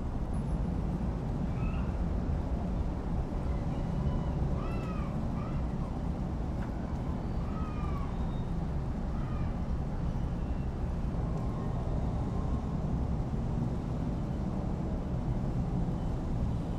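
Steady low background rumble with several faint, short calls that rise and fall in pitch, a few seconds apart in the first half.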